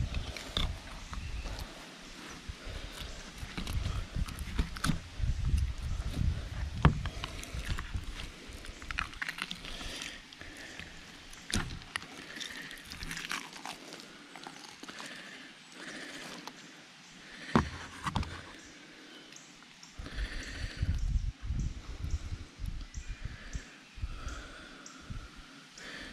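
Wind buffeting the microphone in gusts, with scattered clicks and rustles from a knife slitting open a snakehead's belly and hands pulling the fish apart on cardboard.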